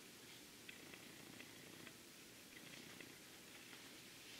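Near silence: room tone, with a few faint ticks.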